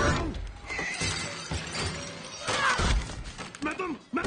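Glass being struck hard and cracking, with several loud crashes, amid shrieks and tense film score.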